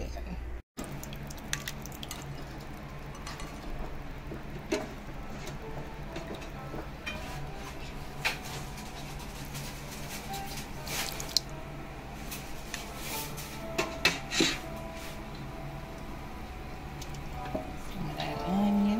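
Glass dishes clinking and tapping now and then as thick sauce is poured from one glass cup into another, over a steady low hum.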